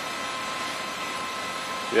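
Okamoto IGM-15NC CNC internal grinder running with its internal grinding spindle turning at low variable speed: a steady whir with faint constant high whine tones.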